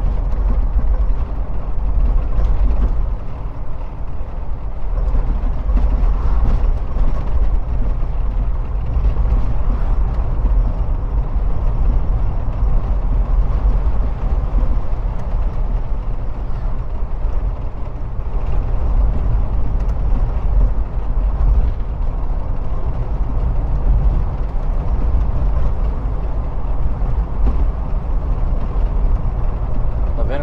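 Steady driving noise heard from inside a moving car on a paved highway: a constant low rumble of tyres, engine and wind.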